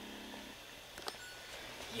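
Quiet room tone with a couple of faint small clicks about a second in.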